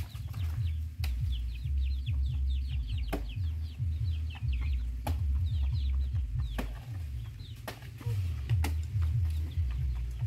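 Birds chirping in rapid short high calls, dense for the first few seconds and sparser afterwards, over a steady low rumble. A handful of sharp clicks sound at intervals.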